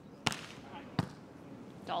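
Two sharp hits on a beach volleyball, about three-quarters of a second apart: a jump topspin serve struck hard, then the serve being passed by the receiver.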